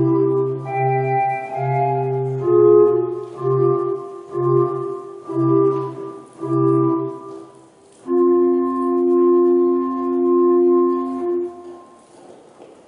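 Children's choir singing unaccompanied-sounding choral music in a reverberant church: short phrases of held notes, then a long final chord that is held for a few seconds and fades away near the end, closing the piece.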